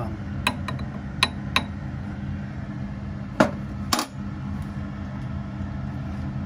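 Kitchenware clinking and knocking on a counter: three light clicks in the first two seconds, then two louder knocks about half a second apart midway, over a steady low hum.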